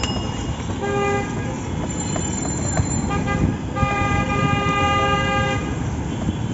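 Motor vehicle horn sounding in street traffic: a short toot about a second in, then a long toot lasting nearly two seconds in the second half, over a steady traffic rumble.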